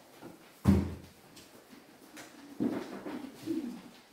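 Handling noise at a lectern microphone: a sharp thump just under a second in, then a cluster of softer knocks and rustles with a brief low sliding tone near the end.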